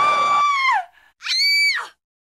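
Two high-pitched human screams. The first is long and falls away at its end, and the second is shorter and higher. A music track cuts off abruptly under the first scream.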